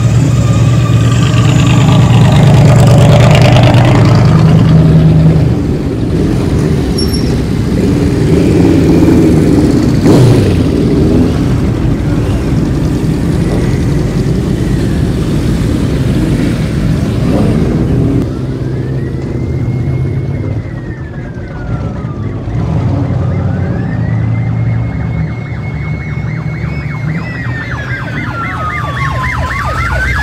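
Parade of V8 muscle cars and motorcycles running and revving as they pass at low speed, one going by with a falling pitch about ten seconds in. Past the halfway mark a police-style siren on a replica pursuit car starts a slow rising and falling wail, switching to a fast yelp near the end.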